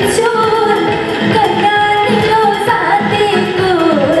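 A woman singing a song live into a handheld microphone, with a band accompanying her over a steady beat; her voice holds long notes and slides between pitches.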